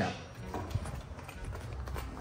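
Bare feet walking quickly on a tiled floor: a run of soft, low footfalls.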